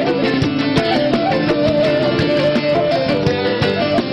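Instrumental break in a live Turkish folk song (türkü): plucked string instruments play a fast, busy melody at a steady loud level.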